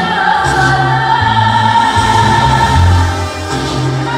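A song with a singer holding one long note over band accompaniment and a steady bass line.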